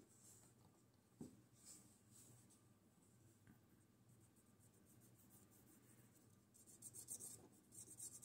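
Faint scratchy rubbing of an alcohol-dampened cotton swab being worked along the inside of a CRKT Fossil folding knife's handle. A small click comes about a second in, and a cluster of quicker scrapes comes near the end.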